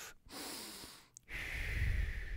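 A man breathing audibly into a close studio microphone: two short breaths, then a longer, louder exhale that buffets the mic from about a second and a half in.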